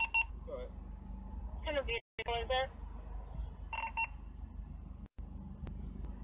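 Short electronic beeps in two quick groups, one at the start and another about four seconds in, over a steady low hum.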